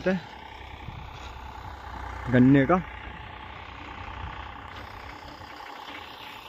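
Eicher 485 tractor's engine running steadily while working a rotavator in the soil, a constant low drone.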